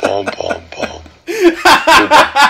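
Chuckling laughter, then a man bursts into loud, hearty laughter about a second and a half in, in rapid repeated peals.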